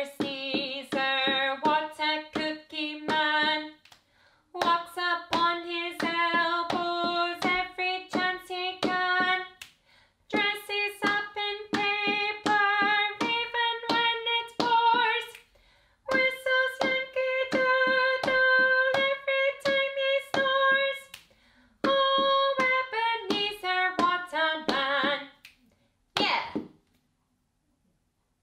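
A woman singing a children's counting rhyme unaccompanied in five quick phrases with short breaths between, keeping time with sharp taps of a wooden drumstick on a carpeted floor. It ends with a single sharp click.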